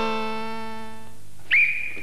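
Closing chord of a short electronic keyboard jingle, held and fading out over about a second. About one and a half seconds in, a sudden loud high tone cuts in and holds.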